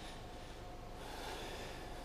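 Quiet pause with faint hum, and a soft breath into a handheld microphone about a second in, heard as a gentle hiss.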